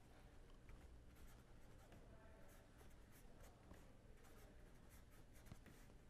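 Faint scratching of a pen writing on paper, in short, irregular strokes as a line of handwriting is written out.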